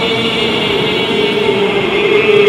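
Men's voices chanting a devotional salam to the Prophet, holding one long, steady sung note.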